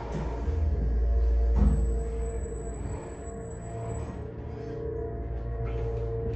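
Montgomery hydraulic elevator car travelling up between floors: a steady droning hum over a low rumble, the rumble strongest in the first couple of seconds.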